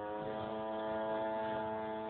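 Petrol engine of a large radio-controlled Extra aerobatic plane running in flight overhead, a steady engine note with several even overtones, held at a slightly raised throttle.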